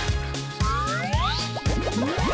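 Upbeat jingle music for an animated TV bumper, with a steady beat and cartoon-style swooping effects: several rising glides come in about a second in.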